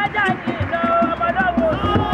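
Several voices singing and calling over quick, steady drumming at a lively outdoor celebration.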